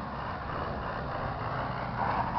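Isuzu Trooper 4x4 engine running at a steady pitch as the truck slides through snow, under a steady hiss of tyres and snow.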